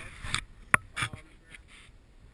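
Handling noise on a hand-held action camera: rubbing noise that dies away, then a few sharp knocks as a gloved hand touches the camera housing, with one faint spoken word among them.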